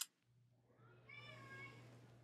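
Near silence over a low steady hum, with one faint drawn-out pitched cry lasting under a second, starting about a second in.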